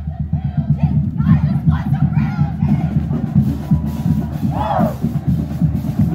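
Marching band members shouting a chant together over a steady, pulsing drum beat, with loud unison shouts about two seconds apart near the end.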